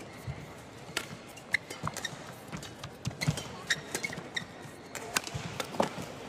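Badminton rally: sharp racket hits on the shuttlecock, about six over a few seconds at an uneven pace, over the steady murmur of an arena crowd.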